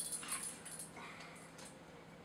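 Dog whining faintly, one brief thin high whine about a second in.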